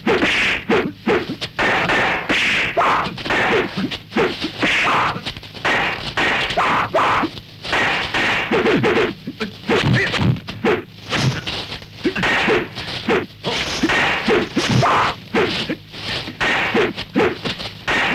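Kung fu film fight sound effects: a rapid, unbroken run of dubbed whacks, thuds and whooshes of blows and swung staffs.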